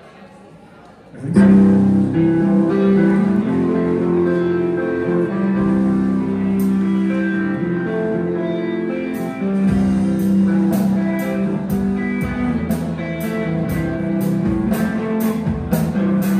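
Live rock band beginning a song: electric guitars and bass come in loud about a second in, and the drums join with a steady cymbal beat about nine seconds in.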